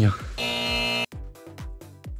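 A buzzer sound effect, one flat electronic tone about two-thirds of a second long that cuts off suddenly. Electronic music with a steady kick-drum beat follows.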